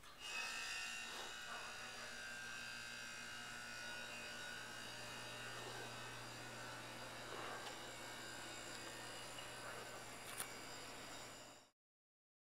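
A steady buzzing hum made of several fixed tones, some high and whining, that starts suddenly and cuts off just before the end, with a faint click about ten seconds in.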